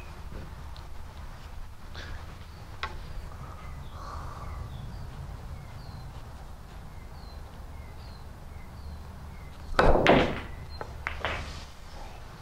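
A billiards shot: after a long quiet aim, the cue strikes the cue ball about ten seconds in, followed straight away by a quick cluster of sharp clacks and knocks as the balls collide, with a few lighter clicks a second later.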